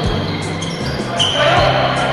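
Basketball bouncing on an indoor court floor during play, with voices in the reverberant hall and a short high-pitched squeal about a second in.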